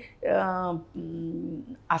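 A woman's voice making two drawn-out vocal sounds without clear words, the first falling in pitch, the second held on one low note like a hum.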